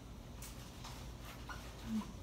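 Dry-erase marker squeaking on a whiteboard in several short strokes as a diagram is drawn.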